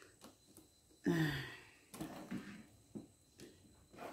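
Phone camera being handled and tilted down on a loose tripod: faint clicks and rustles, with a short vocal sound about a second in.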